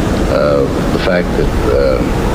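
A steady, loud rushing noise, like surf or wind, under a man's voice speaking a few slow words.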